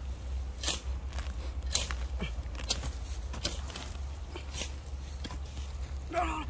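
A long-handled, narrow-bladed iron spade chopping into dry, straw-covered soil to dig out a burrow: short crunching strikes, about one a second.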